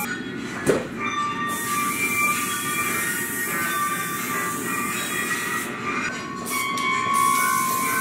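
An aerosol spray-paint can hissing in long bursts, stopping briefly near the start and again about six seconds in, with a sharp knock just under a second in. Under it run held, high, steady tones of background music.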